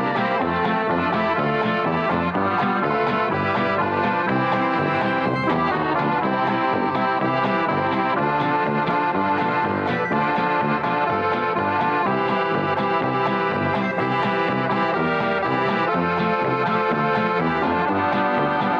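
Three piano accordions playing a tune together, with a dance band including brass backing them.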